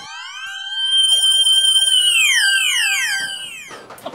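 Electronic comic sound effect, siren-like: a cluster of high tones that hold steady with a brief wobbling tone early on, then slide down one after another and fade out near the end.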